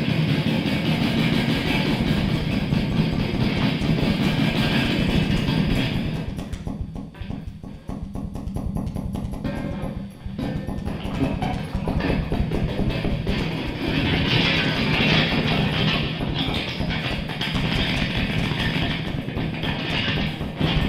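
Free-improvised experimental music from an electric guitar with an amplified wooden board and electronics, a dense, noisy texture. It thins out about six seconds in, dips briefly near ten seconds, and fills back in from about twelve seconds.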